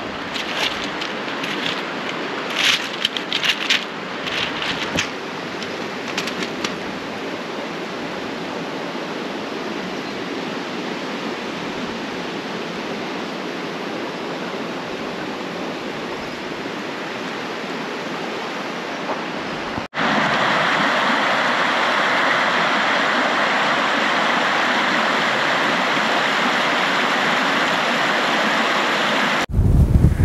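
Shallow stream running over pebbles and rocks, a steady rush of water with small splashes and trickles in the first few seconds. About twenty seconds in it cuts abruptly to a louder, brighter, steady rushing.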